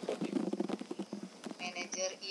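A quick run of light clicks, many a second, followed near the end by a person's voice.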